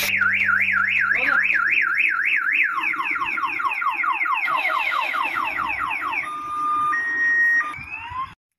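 A truck's electronic siren-style horn cycling through its tones. It starts with a fast warble, about four rises and falls a second, switches to quick falling sweeps a few seconds in, and ends with a couple of short steady tones. The truck's diesel engine is heard running low underneath at the start.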